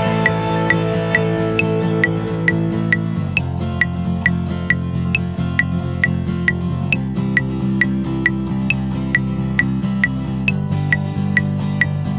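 Metronome click track at 135 beats per minute, a higher-pitched click marking the first beat of each bar, over a soft backing of bass and guitar holding chords that change about every three and a half seconds (Am7, F, G in the key of C).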